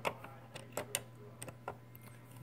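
Light, irregular clicks and ticks of a multi-bit hand screwdriver turning small screws down into a plastic housing, about half a dozen in two seconds, over a faint steady hum.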